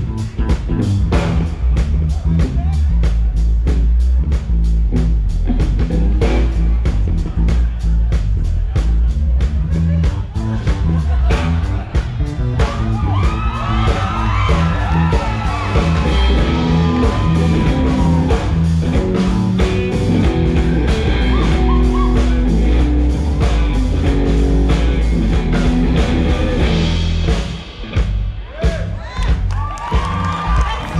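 Live rock band playing, with a heavy electric bass line over a steady drum beat. About halfway through, higher melodic lines that bend in pitch join in, and the music dips briefly near the end.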